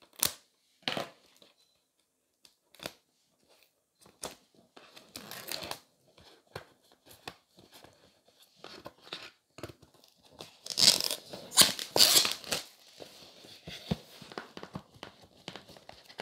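Plastic shrink wrap being picked at with metal tweezers and peeled off a cardboard box: scattered crinkles and small clicks, with a louder run of tearing and crackling about two thirds of the way through.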